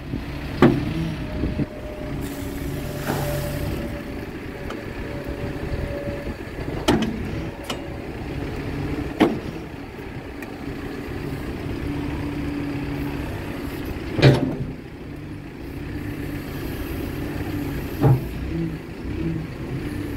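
Caterpillar 430F backhoe loader's diesel engine running under hydraulic load while the backhoe boom, bucket and hydraulic thumb are worked. Its pitch steps up and down with the load, with a thin steady whine from about two to eight seconds in. About five sharp knocks come from the moving boom and bucket, the loudest near the middle.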